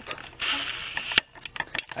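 Handling noise: a short rustling scrape, then two sharp clicks about half a second apart.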